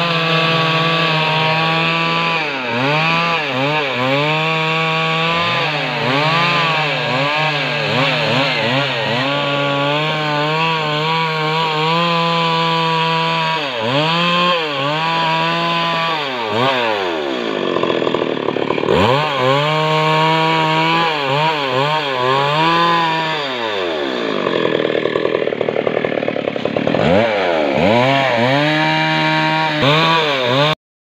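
Stihl petrol chainsaw ripping a log lengthwise, its engine held at high revs under load. Several times the revs drop briefly, with the pitch falling and climbing back, as the throttle is eased and opened again.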